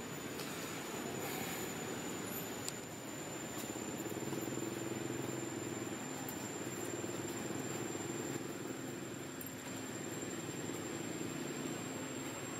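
Steady outdoor background hiss with a thin, high, steady whine, and a low drone from a distant motor that grows stronger about four seconds in.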